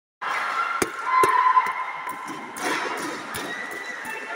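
Taekwondo bout in a reverberant sports hall: four sharp slaps and thuds from the fighters, over crowd voices and shouts.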